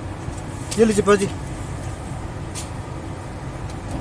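Steady low rumble of vehicle noise, with a short spoken word or two about a second in.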